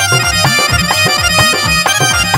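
Instrumental devotional bhajan music from a live band: a reedy, sustained lead melody over a fast, steady drum beat of about four strokes a second.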